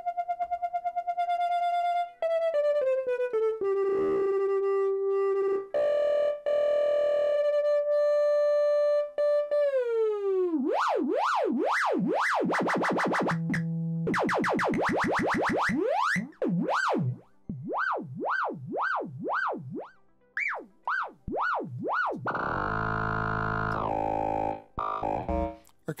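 A DIY Axoloti synth patch sounding held notes that step and glide down in pitch. From about ten seconds in, an LFO sweeps the pitch up and down in wide, quickly repeating swoops, showing that the LFO modulation is working. Near the end it gives a dense, buzzy chord.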